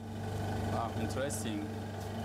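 Steady low electrical-mechanical hum of running measurement equipment in an instrument room, with brief quiet speech over it.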